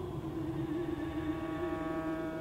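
Closing held tones of a live baroque piece for soprano, viola da gamba and live electronics: one sustained, slightly wavering note, joined about a second in by a steady electronic drone of many fixed pitches.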